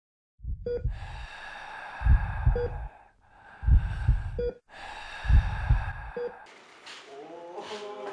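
Hospital sound effects: a heart monitor beeps about every two seconds over heavy paired heartbeat thuds and loud hissing breaths. About six and a half seconds in, these cut off and give way to the chatter of a noisy classroom.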